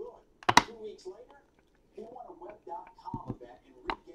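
Sharp knocks and clicks from cardboard card boxes and holders being handled and set down on an aluminium briefcase: one loud knock about half a second in, then a few lighter clicks near the end. Faint voices can be heard in the background.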